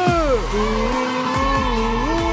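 A cartoon character's voice singing one long, wavering note into a microphone over loud backing music with a low beat; the note slides down at the start and climbs back up near the end.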